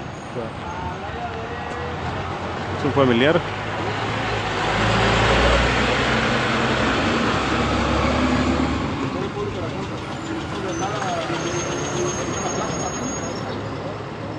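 A large road vehicle passing on the street: a low engine rumble and road noise that swell from about four seconds in, stay loudest for a few seconds, then fade by about nine seconds. About three seconds in, a short loud sound slides up and down in pitch, over faint voices in the background.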